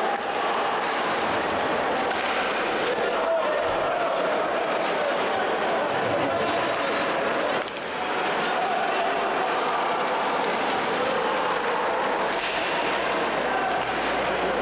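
Steady ice-rink ambience of a hockey game in play: crowd murmur and indistinct voices over the noise of play on the ice, with a brief dip about eight seconds in.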